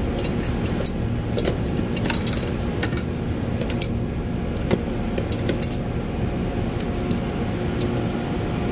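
Steel combination wrenches clinking against other tools as they are set back into a toolbox drawer and the hand rummages among them: a scatter of light metallic clinks, busiest in the first few seconds and again past the middle, over a steady low background hum.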